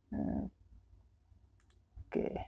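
A brief voiced murmur, under half a second long, just after the start, then two faint clicks a little over a second later, over a low steady hum.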